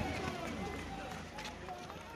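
Faint, indistinct voices of people talking, fading toward the end.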